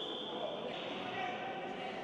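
Sports hall ambience: a steady background hum with a high steady tone for the first part of a second, then a lower steady tone to the end.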